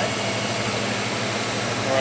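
Truck engine idling: a steady low hum with a constant noise haze over it.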